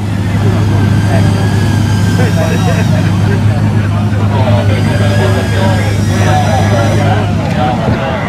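Race car engine idling steadily with a low, even hum, while people talk over it.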